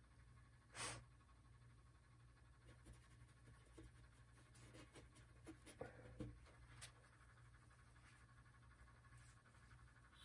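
Near silence: room tone, with a short breath-like noise about a second in and a few faint ticks and scrapes as an oil-painting brush works on the panel.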